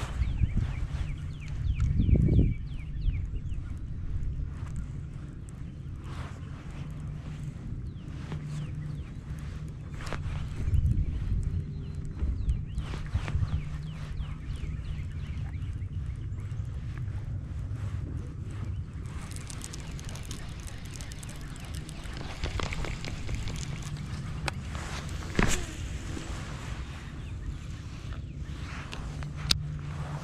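Open-water outdoor ambience with a low steady hum and wind on the microphone, a loud rumble about two seconds in, a few handling knocks from the rod and boat, and faint waterfowl calls near the start.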